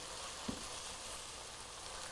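Chopped vegetables sizzling steadily in bacon fat in a stainless pot as they are stirred with a wooden spoon, with a soft knock about half a second in.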